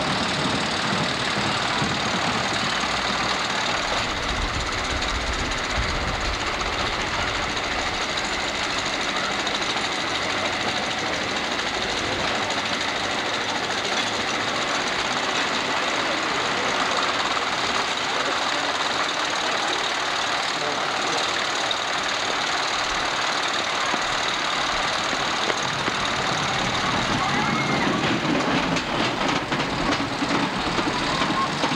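Amusement-park ambience: crowd chatter mixed with the steady mechanical noise of rides running.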